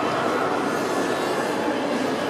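Shopping-mall ambience: a steady, echoing wash of crowd noise in a large indoor hall.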